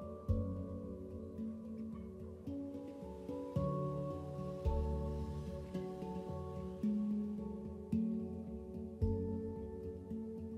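Soft new-age background music: slow single notes, one about every second, each starting sharply and ringing out as it fades.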